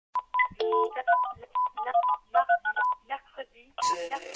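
Telephone touch-tone beeps in a fast, irregular run of short electronic tones, with brief phone-tone snippets and clipped voice-like fragments among them. Music comes in near the end.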